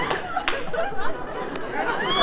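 Studio audience laughing and murmuring, with indistinct voices among it, on a band-limited old radio broadcast recording.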